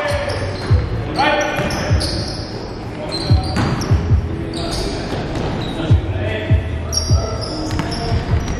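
A basketball bounced on a hardwood gym floor, about ten dull thumps at uneven spacing, with high squeaks from sneaker soles and players' shouts echoing in a large hall.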